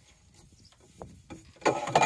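Metal table fittings of a camper-van kitchen pod being handled: a couple of light clicks, then a short, louder clatter near the end.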